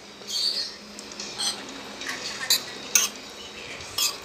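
Metal spoon scraping and clinking against a plate while scooping up rice, with four or five sharp clinks spread about a second apart.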